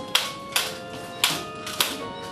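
Abacus beads on a handmade soroban instrument clacking sharply, four separate clacks, while sustained notes ring faintly underneath.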